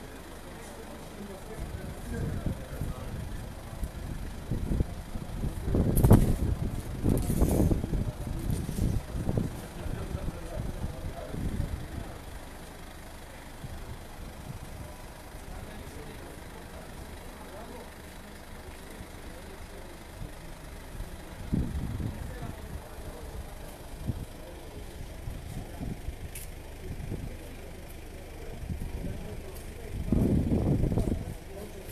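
A parked van's engine idling with a steady low hum, under the untranscribed voices of people nearby that come and go. It is loudest about six seconds in, with a sharp knock.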